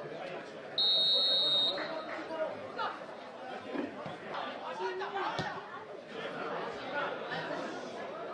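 A referee's whistle blown once, a single steady blast just under a second long about a second in, marking the start of play. Players' shouts and voices on the pitch continue throughout.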